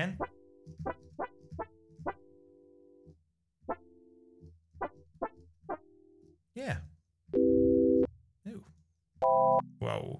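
Notes from a randomized Ableton Operator FM synth preset: a run of short plucked notes, then two louder held tones near the end that sound almost like an organ.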